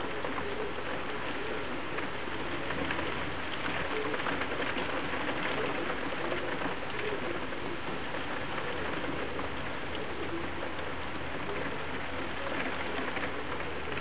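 Steady heavy rain: an even hiss with a patter of many individual drops.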